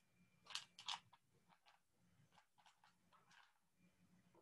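Near silence, with two faint short clicks about half a second in and a few fainter ticks after.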